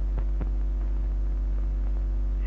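Steady low electrical hum of an old film soundtrack, with two faint clicks in the first half second.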